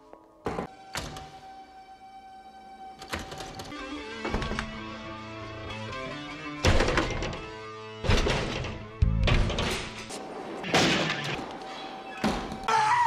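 Tense film-score music with a held tone, broken by a series of about eight heavy thuds and bangs, the loudest in the second half.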